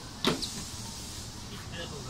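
A wheelchair rolling over a portable metal boarding ramp at a train door, with a sharp knock about a quarter second in and a lighter tick just after.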